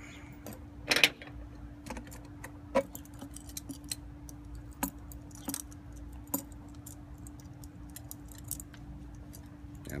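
Small metal hardware (a nut, lock washer and flat washer on a bolt) clinking and clicking in the hands as it is threaded and pushed through a hole in a fire juggling ring. The light clicks are scattered, the loudest about a second in, over a faint steady hum.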